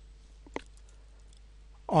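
A stylus on a drawing tablet giving one sharp click about half a second in, then a few faint ticks, over a faint steady hum. A man's voice starts near the end.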